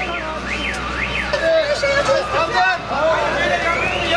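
An emergency vehicle's siren: a quick yelping sweep up and down in the first second, then a slow rising wail that peaks near the end. Voices of people in the street are heard under it.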